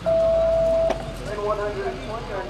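A single loud, steady electronic beep at one pitch, lasting a little under a second and cutting off sharply with a click, followed by voices.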